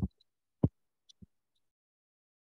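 A few keyboard keystrokes picked up as short low thuds: one at the start, a louder one about half a second later, then two faint ones around a second in.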